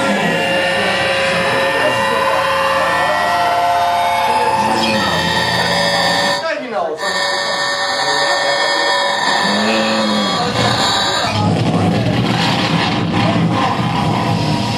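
Loud live noise music: a dense layer of held electronic tones and distorted sounds. There is a sweep falling in pitch about six and a half seconds in, and the texture turns harsher and noisier from about eleven seconds.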